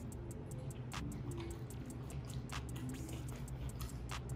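A person chewing a mouthful of sushi roll, over background music with a steady beat.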